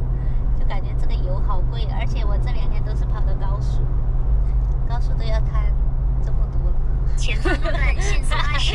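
A woman talking over the steady low drone of road and engine noise inside a car cabin at highway speed.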